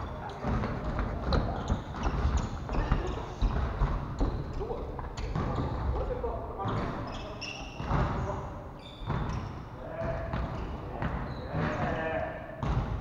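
A volleyball being hit and bouncing on a wooden gym floor: repeated sharp thuds, with players' voices calling out in a reverberant hall.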